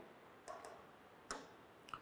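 Near silence with three faint, short clicks spread across two seconds: a stylus tapping an interactive touchscreen board as the handwritten working on it is cleared.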